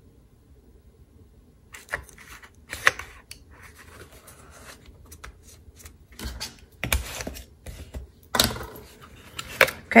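Cardstock being handled and pressed on a cutting mat: paper rustling and rubbing, with several sharp clicks and taps, beginning about two seconds in after a quiet start.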